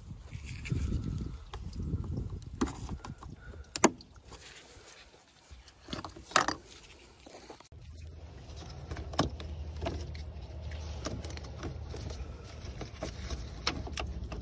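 Plastic air box and intake pipe being worked loose and lifted out of a car's engine bay, pulled free of its rubber mounting bungs: scattered sharp knocks and clicks of plastic, with a low steady rumble behind them in the second half.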